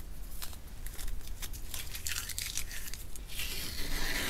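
Masking tape being peeled off a sheet of watercolour paper: a few light crackles and ticks as the tape is lifted, then a louder, longer tearing noise near the end as a strip comes away.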